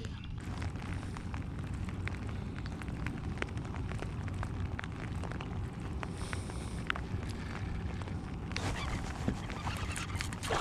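Wind rumbling on the microphone, with many small scattered ticks and clicks over it. A brief rushing hiss comes in about a second and a half before the end.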